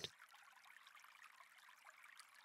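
Near silence, with only a faint, even hiss of a running-water ambience bed.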